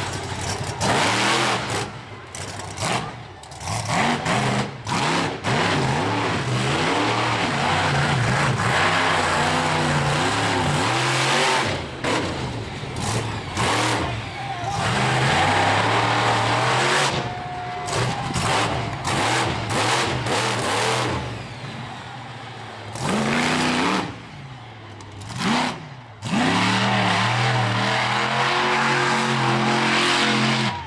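The Bounty Hunter monster truck's engine is revving hard in repeated bursts. Its pitch climbs and falls again and again, with several brief drops where the throttle is lifted.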